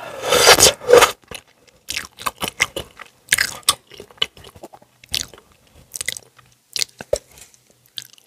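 Close-miked eating of instant ramen noodles: a loud slurp of a mouthful of noodles in the first second, then wet chewing and mouth clicks in short, irregular bursts.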